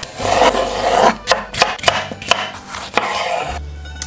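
Chef's knife slicing through cucumber and tomato on a wooden cutting board: a rasping cut through the flesh, then a string of sharp knocks as the blade meets the board.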